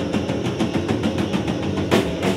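A live punk band playing: distorted electric guitar and drum kit in a dense, loud wall of sound with a fast even pulse of about nine strokes a second, ending on a loud hit.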